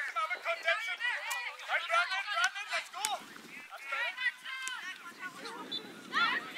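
Several high-pitched voices calling and shouting across a soccer field, overlapping and indistinct, with a few sharp knocks among them.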